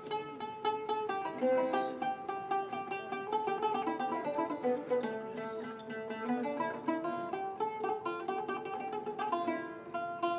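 Acoustic guitar played live, a steady flow of quickly picked melody notes over sustained lower notes.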